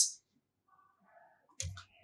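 A pause in speech: near silence, then a short, soft click near the end, just before talking resumes.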